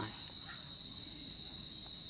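An insect trilling steadily on one high pitch.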